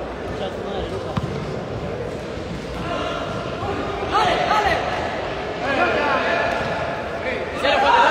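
Players and spectators shouting in an echoing indoor sports hall during a futsal match, with louder calls about four seconds in and again near the end. A sharp thud of the ball being kicked comes about a second in.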